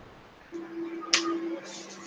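A plastic marker cap clicking once, sharply, about a second in, over a faint low hum.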